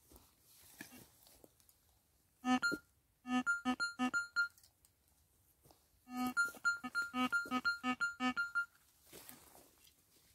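Metal detector giving a run of short beeps as its coil sweeps over the dug hole, switching between a low tone and a high tone, in two bursts about two and a half and six seconds in: the detector signalling a target still in the hole.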